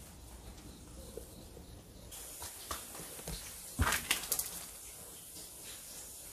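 Footsteps and scuffs on a dusty, gritty floor as someone walks into a room, with a few sharp knocks and a quick cluster of loud clatters about four seconds in.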